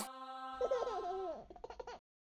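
Channel logo sting: a held synth tone with high-pitched laughter over it. The laughter glides up and down, then breaks into short choppy bursts near the end before cutting off suddenly.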